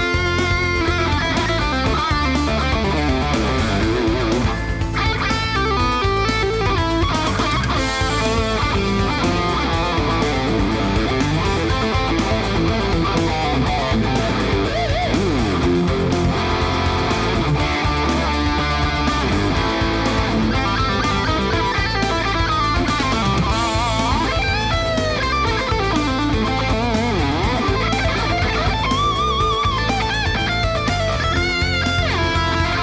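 Kramer Baretta Special electric guitar, its single Seymour Duncan HS4 pickup through an amp, playing an 80s-style rock lead with string bends and vibrato. Steady low notes underneath change every couple of seconds.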